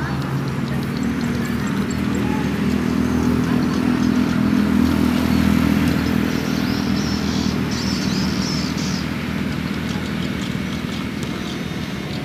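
An engine droning steadily, swelling toward the middle and easing off near the end.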